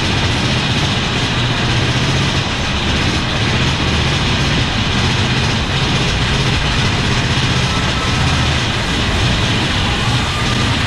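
Mine-train roller coaster running along its track through an enclosed rock tunnel: a loud, steady rumble of the train's wheels and track with a low hum underneath.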